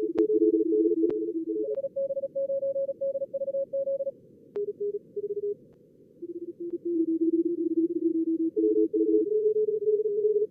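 Simulated Morse code pileup from a contest practice simulator: several fast CW signals at slightly different pitches, keyed at high speed and overlapping. The keying pauses briefly twice near the middle, and a few sharp clicks are heard.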